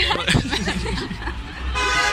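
Voices and laughter over a low rumble of the camera being handled, then near the end a brief buzzing, horn-like tone.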